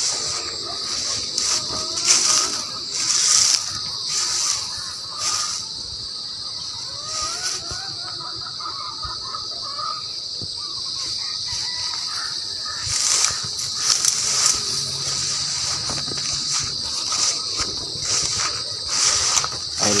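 A steady, high-pitched drone of insects in a field, with rustling and bumps breaking in now and then as the phone is carried through the plants.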